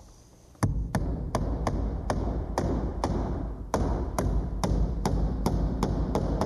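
Hammer driving a long finish nail through a door jamb into the framing: a quick run of sharp blows, about four a second, beginning about half a second in.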